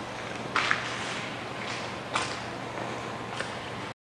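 A few scattered footsteps of someone walking away, over a steady background hiss of shop room noise; the sound cuts off suddenly just before the end.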